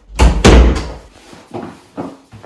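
Wooden interior door slammed shut: a loud bang about half a second in, with a double hit as it meets the frame.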